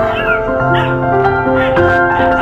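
Background music with held notes, over which an Alaskan Malamute puppy gives about three short, high-pitched whining calls while it plays.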